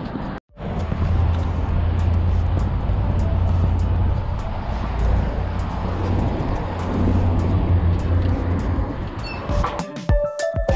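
Background music with a steady beat over a steady low outdoor rumble, after the sound drops out briefly about half a second in.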